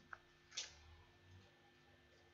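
Near silence: room tone with a faint short tick just after the start and a brief click about half a second in.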